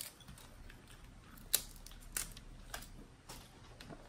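Snow crab legs being cracked and pulled apart by hand: a few sharp shell cracks and clicks, the loudest about a second and a half in.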